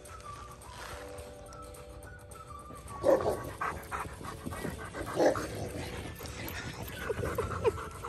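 Background music with steady held notes, then a dog barks loudly twice, about three and five seconds in. Near the end it gives a quick run of short, pitched calls.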